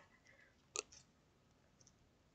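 Near silence: room tone, with one short click just under a second in.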